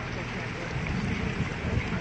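Pontoon boat's motor running steadily at slow cruising speed, a low even hum with a haze of water and wind noise over it.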